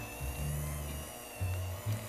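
Electric hand mixer beating a cream cheese filling until smooth, a steady motor whine, over background music.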